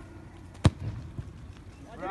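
A football kicked hard once: a single sharp thud about two-thirds of a second in, followed by a fainter knock about half a second later.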